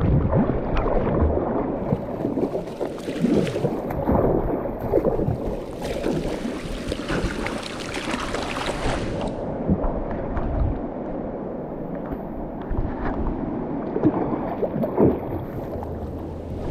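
Rushing, splashing water of a flooded, fast-flowing river heard right at the surface, with gurgling as the current washes around the camera. It is choppier and louder in the first half, then a little steadier and quieter.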